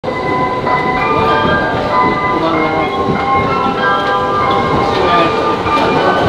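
Electric commuter train running on rails: a loud, steady rumble and rail noise, with short held tones at several pitches coming and going over it.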